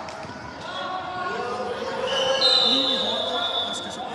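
Voices calling out in a large, echoing sports hall, with a high, steady whistle blast starting about halfway through and lasting over a second, the loudest sound; a referee's whistle between plays of a youth American football game.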